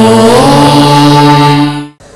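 A man's voice chanting one long held note of a mantra, stepping up in pitch about half a second in and cutting off just before the end.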